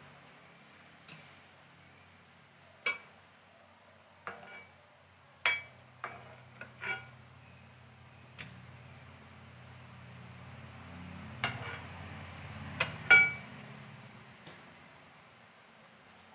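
Steel spoon clinking against a pot of boiling pomegranate juice: about a dozen sharp taps, each with a brief metallic ring, the loudest near the end. A faint low hum runs underneath and swells through the middle.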